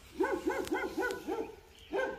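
A dog barking in a quick run of short, high barks, about six a second, for a little over a second before stopping.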